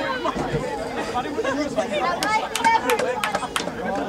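Indistinct chatter of several spectators talking over one another, with a quick run of sharp clicks in the middle of it.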